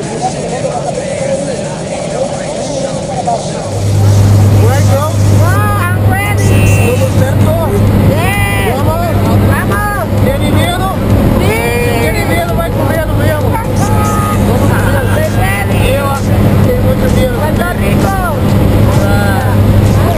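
Steady low engine drone inside the cabin of a skydiving jump plane, starting abruptly about four seconds in, with people's voices talking and calling over it.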